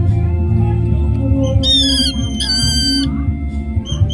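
A hand-held bird gives two shrill, high squawks in quick succession, each about half a second long with a slight downward slide in pitch, over steady background music.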